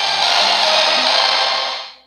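A loud, steady hiss of noise, with no pitch to it, lasting nearly two seconds and fading out near the end.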